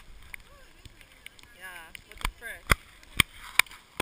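Sharp taps, about one every half second in the second half, from heavy rain striking the GoPro camera's housing, with brief bits of voice in between.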